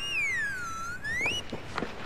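A comic whistle sound effect that glides down in pitch and back up again, followed about a second and a half in by a few quick footsteps.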